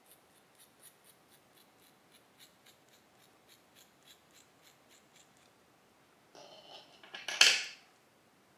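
Small scissors snipping through long curly human-hair extensions to cut layers at the front: a run of quick, faint snips, about three or four a second, for about five seconds. Near the end comes a louder brief burst of noise.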